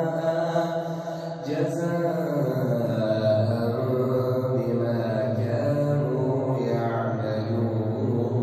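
A male imam reciting the Quran aloud in a melodic, chanted style, drawing out long held notes; the pitch glides down about two seconds in.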